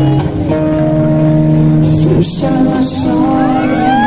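Live band music over a stage sound system: sustained chords with a man singing, his voice sliding upward near the end.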